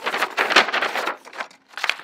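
Paper envelope being shaken and handled, its paper rustling and crinkling as the letter and loose paper shapes inside are tipped out. The rustling stops about a second and a half in.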